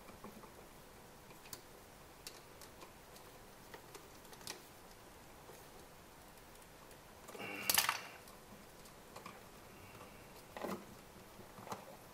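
Faint, scattered clicks and small scrapes of copper wires and a screwdriver being worked against a duplex outlet's brass terminal screws and clamps, with one louder handling noise about two-thirds of the way through.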